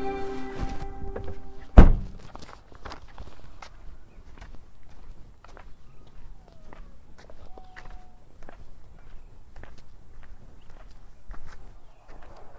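Music fades out, then an SUV door is shut with one loud thunk, followed by footsteps walking steadily on asphalt.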